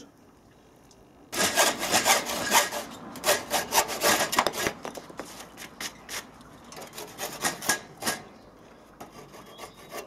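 Handsaw cutting through a timber decking board in quick back-and-forth strokes, cutting a corner notch out of a slat. The sawing starts about a second in, is strongest at first and thins out around eight seconds in.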